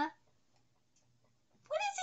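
A woman's voice speaking, with a pitch that slides up at the start, then a pause of near silence for over a second before she speaks again near the end.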